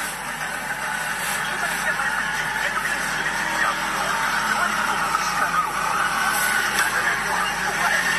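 Street noise of road traffic, with people's voices in the background.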